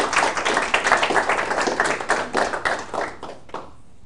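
Audience applauding, a dense patter of hand claps that dies away near the end.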